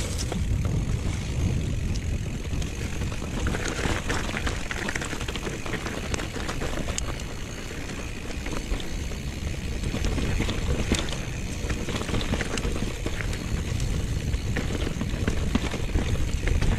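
Mountain bike riding down a grassy singletrack: a steady low rumble of tyres and air on the action camera's microphone, with frequent small clicks and rattles from the bike.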